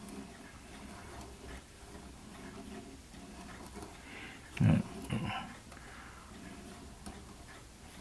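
Faint, soft scratching of a sanding stick rubbed back and forth across a small plastic model part held in a metal pin vise. A brief louder low sound comes about halfway through.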